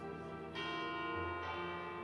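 Two bell strikes over a soft, steady music bed: one about half a second in and another about a second and a half in, each left ringing.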